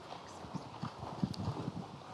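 A few soft, irregular knocks and bumps over quiet auditorium room tone.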